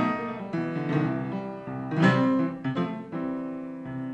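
Upright piano played solo, a slow blues introduction of struck chords that ring and fade between strokes. The loudest chord comes about two seconds in.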